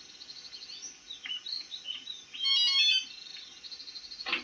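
Birds chirping, with scattered short high calls and a louder call lasting about half a second roughly two and a half seconds in.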